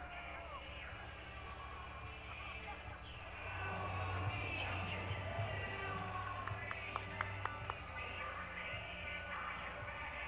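Faint stadium ambience: music over the public-address system mixed with distant voices, getting a little louder a few seconds in.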